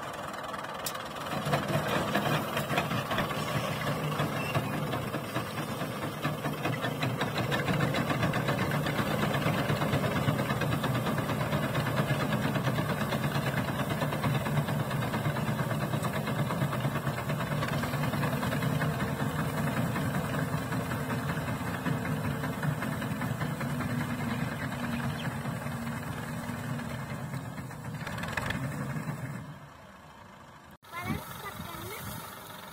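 Tractor diesel engine running steadily under load as it drives a tractor-mounted reaper cutting standing wheat.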